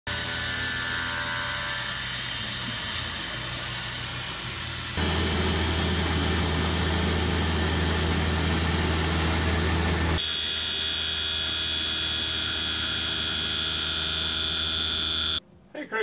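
Tormach PCNC 770 CNC mill's spindle and end mill cutting a steel plate: a steady machining noise. It changes abruptly twice, at about 5 and 10 seconds in, and the last stretch carries a steady high-pitched whine.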